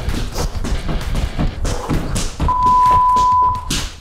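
Quick single-leg hops landing on a hard floor in a rapid series of thuds. Partway through, a long, steady electronic beep from the interval timer lasts about a second, marking the end of the work set.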